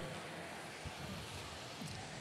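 Faint, steady arena background noise, with one soft tick about a second in.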